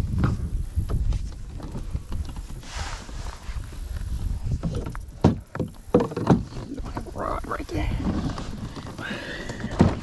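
Knocks and scrapes from a plastic fishing kayak and its gear being handled in shallow water, over a low rumble, with the sharpest knocks about halfway through and near the end.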